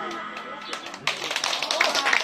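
A tremolo harmonica's final held chord fades out, then a few listeners start clapping about a second in.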